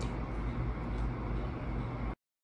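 Steady low background rumble with a faint hiss, and a single faint click at the very start.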